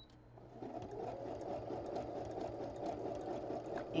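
Electric sewing machine starting about half a second in and then running steadily, stitching a zigzag stitch through layered quilt fabric.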